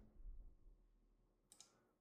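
Near silence: room tone with a faint click.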